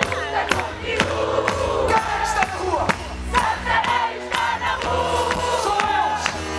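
Live band music with a steady drum beat of about two strokes a second and a bass line, several men singing together over it, with a crowd joining in.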